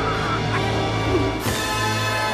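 Orchestral film-score music with many sustained tones, broken by a sudden loud hit about one and a half seconds in.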